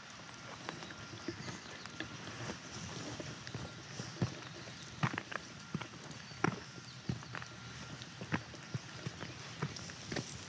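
Footsteps walking slowly over wet asphalt and pine-needle litter: faint, irregular scuffs and clicks, a few of them sharper.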